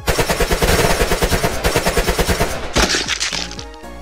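Cartoon sound effect of automatic rifle fire: a rapid, even burst of shots lasting nearly three seconds, then a short crackling burst, over background music.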